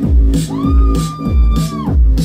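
Live rock band playing: kick drum on the beat about twice a second with cymbals and electric bass under it. About half a second in, a high note is bent up into pitch and held for over a second.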